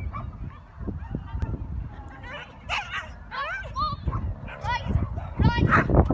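A dog barking in quick, high yips: a run of short calls begins about two seconds in and gets louder near the end.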